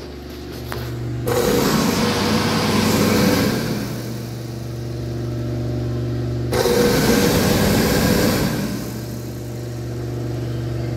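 A Bobrick AirPro (Airdri Quarto, model B-709) push-button hand dryer running: a steady motor hum under a rush of air. The air rush is loud from about a second in, breaks off suddenly at about six and a half seconds, comes back, and eases off near the end.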